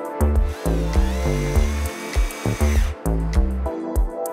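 A cordless drill-driver spins up with a rising whine, holds steady while driving a screw for about two seconds, then stops. Background music with a steady beat plays throughout.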